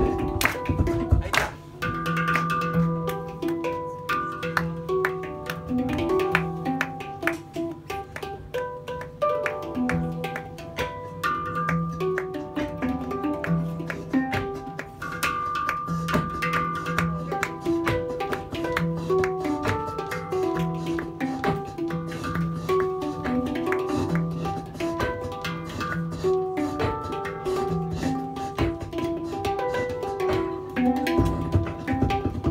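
A hang (handpan) played in a repeating pattern of ringing notes, with human beatboxing adding sharp clicks and drum sounds over it.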